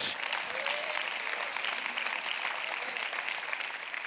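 Congregation applauding steadily, a dense even clapping that fades slightly toward the end.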